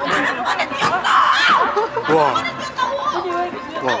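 Several people's voices chattering over one another, with a louder outburst a little over a second in.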